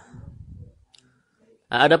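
A pause in a man's spoken lecture: a faint, low clicking crackle right after he stops talking, then a moment of near silence. He starts speaking again near the end.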